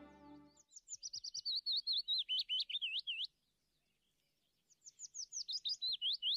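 Songbird chirping: a quick string of about six high chirps a second, each sweeping down and up in pitch. It comes in two phrases of about two and a half seconds, with a pause of about a second and a half between them.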